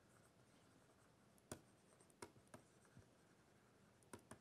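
Faint light taps of a stylus on a tablet's writing surface during handwriting, four short clicks from about a second and a half in, over near silence.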